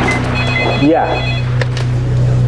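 Electronic telephone ringer trilling once for about a second, a warbling high ring, over a steady low hum.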